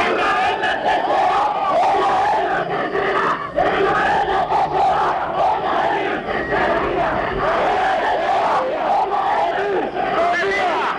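Large crowd of protesters shouting, many voices at once in a continuous loud din.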